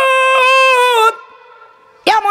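A preacher's voice holding one long, loud, high note, a chanted cry in the melodic style of a Bengali waz sermon. The note falls slightly and breaks off about a second in, leaving only a faint fading tail.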